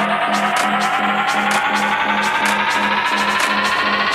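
Electronic dance track: a synth riser climbing slowly and steadily in pitch over a low synth note pulsing about four times a second and a steady hi-hat pattern.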